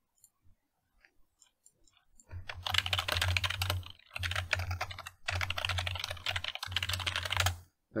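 Fast typing on a computer keyboard in several quick bursts, after a couple of seconds of a few faint scattered key clicks.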